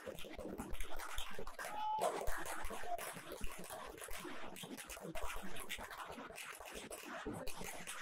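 A string of firecrackers crackling, many small pops in quick irregular succession.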